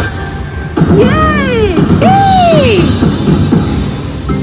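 Slot machine win celebration: a cartoon woman's voice gives two long, excited exclamations, each rising and then falling in pitch, starting about a second in, over the game's jingle music.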